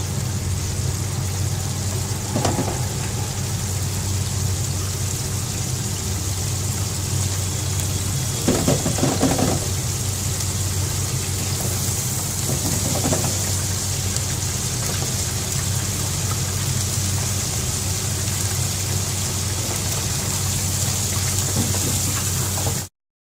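Paneer cubes deep-frying in a basket fryer: hot oil sizzling over a steady low hum, with a few short louder bursts, the biggest about eight and a half seconds in.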